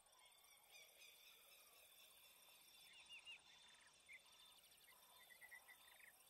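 Near silence with faint birdsong: scattered short chirps, a quick run of about four near the middle and another short series near the end.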